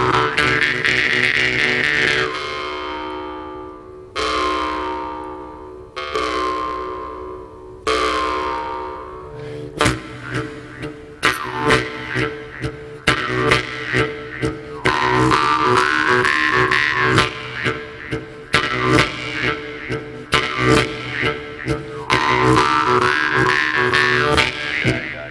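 Two Jew's harps played together into microphones: a steady drone with shifting, vowel-like overtones. Four single plucks about two seconds apart are each left to ring and fade, then from about ten seconds in the playing turns into fast rhythmic plucking.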